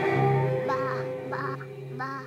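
A black goat bleating three short times, about two-thirds of a second apart, over a sustained, ominous film-score drone of low strings.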